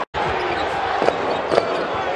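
A basketball being dribbled on a hardwood court, a few bounces about half a second apart, over steady arena crowd noise. The sound cuts out for an instant at the start.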